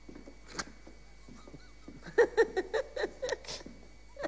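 A person laughing in a quick run of short high-pitched bursts, starting about two seconds in, after a single sharp knock just over half a second in.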